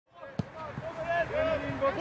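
A football kicked with a sharp thud about half a second in, with another kick near the end, among several players calling and shouting on the pitch.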